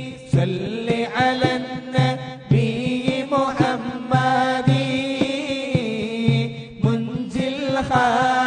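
Voices chanting a mawlid, an Arabic devotional poem in praise of the Prophet, in long melodic lines, over a regular beat about twice a second.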